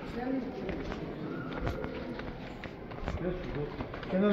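Footsteps going down stairs, with irregular sharp knocks of shoes on the steps, under faint voices.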